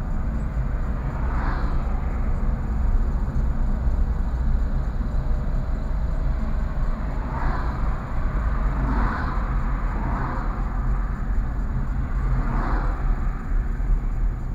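Road and engine noise heard inside a moving car's cabin: a steady low rumble, with several brief swells of louder noise.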